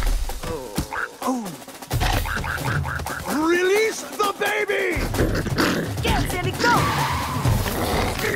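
Film action soundtrack: music under characters' wordless yells and grunts, mixed with animal cries from the chasing creature.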